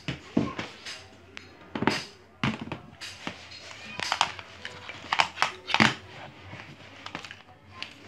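Irregular clicks and knocks of handling as a plastic power strip and cables are set down on a homemade motor-generator rig, with no motor running.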